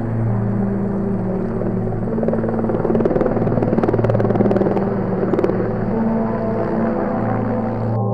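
Helicopter rotor chopping steadily as it hovers low, louder in the middle few seconds, over a sustained drone of background music.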